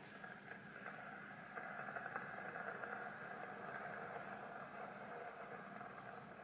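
Glass electric kettle heating water before the boil: a faint, steady crackling hiss as small bubbles form and collapse on the heating plate. It grows louder about one and a half seconds in.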